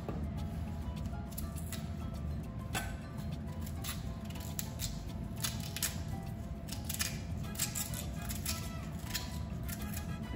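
A small kitchen knife cutting and scraping the thick rind off a chunk of raw yuca (cassava), many short irregular scrapes and clicks as the peel comes away, over faint steady background music.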